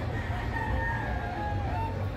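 A gamefowl rooster crowing, its call rising and falling in pitch, over a steady low rumble.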